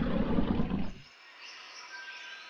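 Sound effect of an animated logo intro: a low, noisy sound that fades out about a second in, then faint, thin high tones.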